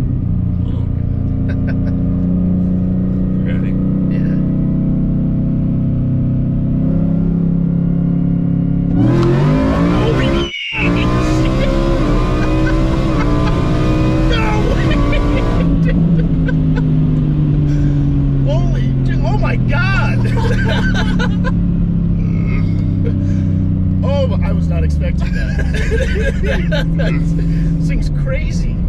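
Whipple-supercharged 1,100 hp Ford F-150 heard from inside the cab: running at a steady cruise, then about nine seconds in a hard pull with revs climbing and a rising whine, a momentary cut in the sound, more pulling, and back to a steady cruise after about fifteen seconds. Passengers laughing over the engine in the second half.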